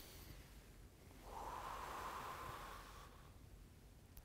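A man taking a slow, deep recovery breath after exercise: the end of an inhale at the start, then a long, faint exhale lasting about two seconds from about a second in.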